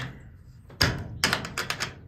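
A small steel bolt latch on a wooden trailer door being worked by hand: one sharp metal click about a second in, then a quick run of light clicks and rattles.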